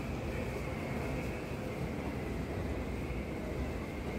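Steady low rumbling background noise with a faint hiss, even throughout, with no distinct events.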